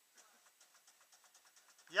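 Faint, rapid, even clicking, about eight to ten clicks a second, from a ratchet on the recovery line as slack is let out.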